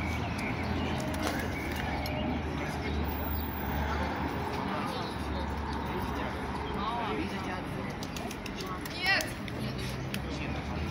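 Outdoor town-square ambience: a steady low hum of distant traffic with faint far-off voices, and a brief high call about nine seconds in.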